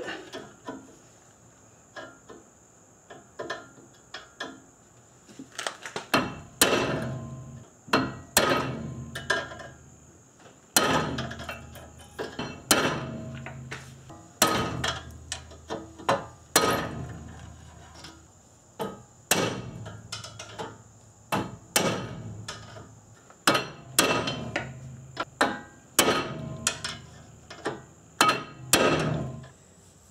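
A heavy hammer of about three pounds striking the end of a long flathead screwdriver wedged against a seized brake caliper guide pin, metal on metal: a few light taps at first, then hard blows, often in pairs, from about six seconds in, each with a short ring. The pin is seized solid and does not move under the blows.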